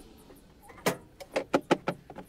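Quiet handling sounds: a sharp click about a second in, then a few quicker clicks and light knocks. They come as a small safe in the storage under a caravan bed is shut and the bed lid is lowered.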